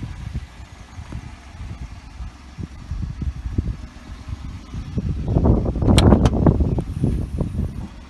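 Uneven low rumble of handling and movement on a phone microphone, then, about five seconds in, a louder rustling stretch with a few sharp clicks near the six-second mark as the Peugeot 107's tailgate is unlatched and lifted open.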